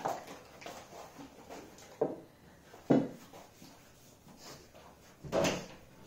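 Several separate knocks and thumps of croissant dough being folded and rolled with a wooden rolling pin on a silicone mat over a wooden worktop, the sharpest about three seconds in and a longer thump near the end.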